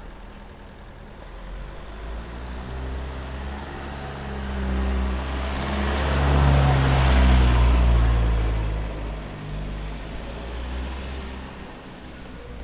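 A car drives past: its engine and tyre noise grow louder, peak about seven seconds in, then fade away.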